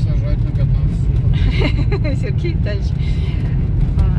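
Steady low rumble of engine and road noise inside the cabin of a moving car, with some indistinct speech partway through.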